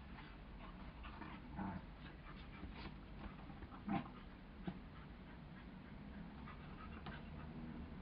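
Two border collies play-wrestling, with brief dog vocal sounds scattered through; the loudest and sharpest comes about halfway through.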